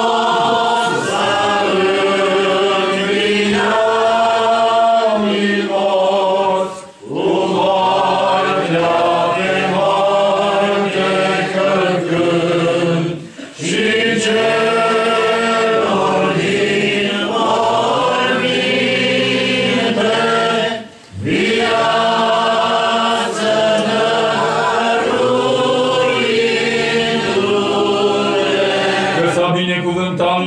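A group of voices chanting a Romanian Orthodox Easter hymn together in long, held phrases, breaking off briefly three times, at about 7, 13 and 21 seconds in.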